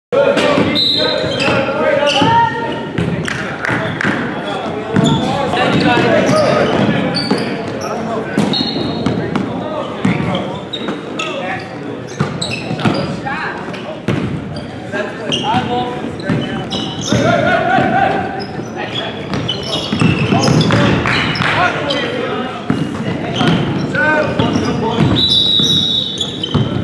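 Basketballs bouncing on a gym's hardwood court during a game, a run of sharp bounces mixed with players' and onlookers' voices and shouts, all echoing in a large hall.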